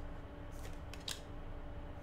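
Trading cards being flipped through by hand, card faces sliding and scraping against each other in a few short strokes about half a second and a second in, over a faint steady hum.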